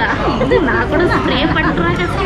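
Several voices talking over one another: overlapping chatter of a small group of onlookers.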